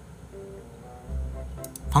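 Soft background music, a few held notes stepping upward in pitch, with a man's voice coming in at the very end.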